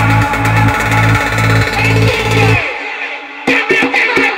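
Work-in-progress electronic dance track playing back from the production software: a pulsing bass line drops away for about a second past the middle, then comes back with deep kicks falling in pitch near the end.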